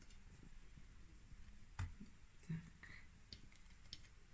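Faint room quiet broken by a few light clicks and knocks, the sharpest a little under two seconds in: fried syrniki being picked off a glass plate and set down in a glass baking dish.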